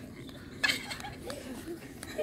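Faint voices of people playing outdoors, with one short, sharp high-pitched cry just over half a second in.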